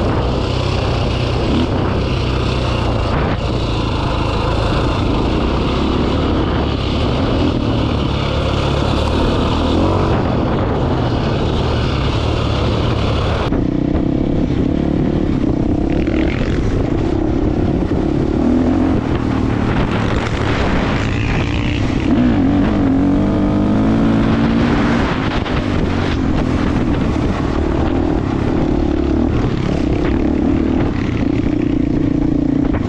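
KTM four-stroke single-cylinder dirt bike engine running under load as it is ridden along a dirt trail, revs rising and falling with the throttle.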